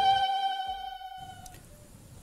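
Background music of a news segment ending: a held chord fades out over about a second and a half.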